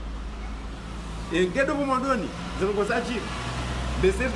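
A man speaking for a couple of seconds after a short pause, over a steady low background rumble.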